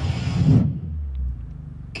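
Film trailer soundtrack: the tail of a man's spoken line, then a deep, steady low rumble for about the last second and a half.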